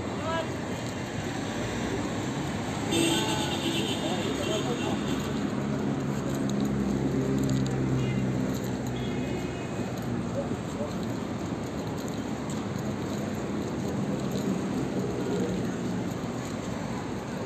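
Busy pedestrian-street ambience: passers-by talking and traffic running in the background, with a low steady hum growing louder for several seconds in the middle.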